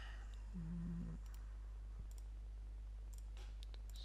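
Faint, scattered computer clicks as a laptop is worked, over a steady low hum. A short hummed voice sound comes about half a second in.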